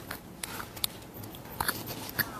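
Handling noise from a clip-on lavalier microphone being fixed to clothing: scratchy rustling of fabric rubbing against the mic, with a few sharp clicks about every half second.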